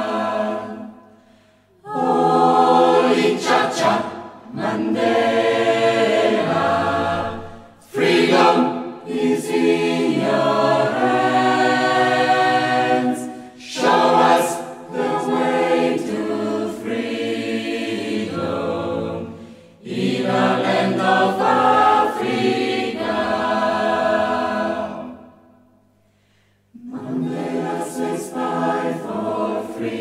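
A choir singing in phrases separated by brief pauses.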